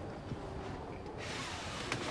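A pleated fly screen sliding across a camper van's side-door opening: a soft steady hiss comes in about a second in over low hall background, with a single click near the end.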